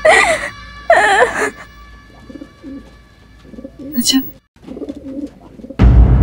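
A woman crying: two loud sobbing wails in the first second and a half, then softer whimpering sobs, over a faint held note of background music. A loud drum hit and music come in just before the end.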